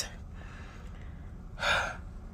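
A woman's short, audible breath in exasperation, about a second and a half in, over a low steady background rumble.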